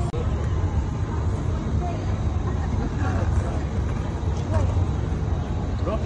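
Outdoor urban ambience: a steady low rumble, with faint voices in the background.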